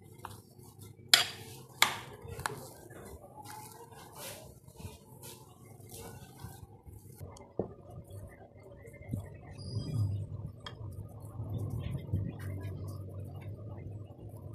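Metal spoon clinking and scraping against a glass mixing bowl while stirring thick mashed cassava, with two sharp clinks about one and two seconds in. From about seven seconds on the clinks give way to quieter, softer handling of the mash.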